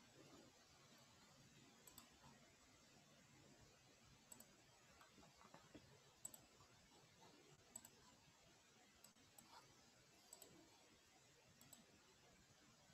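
Near silence with faint, scattered computer mouse clicks, one every second or two.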